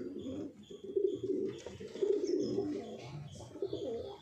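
Homing pigeons cooing in low, drawn-out bouts, the loudest about one and two seconds in.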